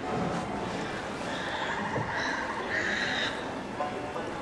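Recorded bayou sound effects from the ride: a pulsing, croak-like call heard twice, first for about a second, then more briefly, over steady background ambience.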